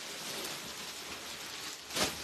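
Clear plastic garment packaging crinkling and rustling as it is handled, with a sharper, louder crackle at the very end.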